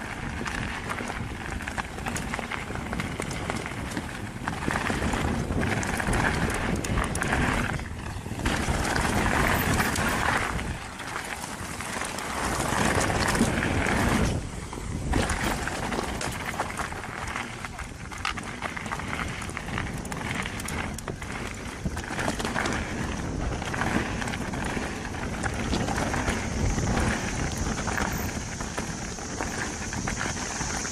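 A 2022 YT Capra mountain bike running fast down a dirt singletrack: a steady rush of tyre and trail noise with the bike rattling, swelling and easing in surges as the ride goes on.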